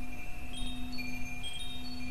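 Wind chimes ringing: several high, clear notes sounding one after another and ringing on over a low steady hum.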